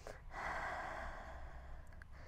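A woman's audible breath through the nose or mouth: one soft rush of air lasting about a second.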